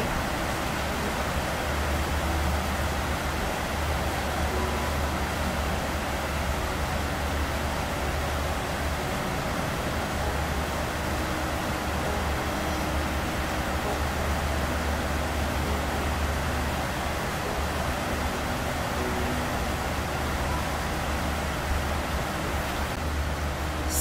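Steady hum and hiss of a room air conditioner running, with a strong low hum underneath, unchanging throughout.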